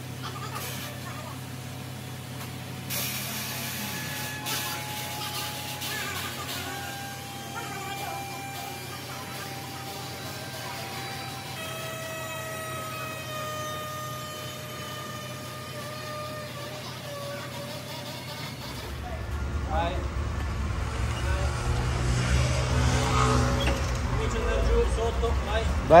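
Background music with held notes for most of the stretch. Then a low engine rumble comes in and grows louder as the Cadillac's engine runs, with voices around it.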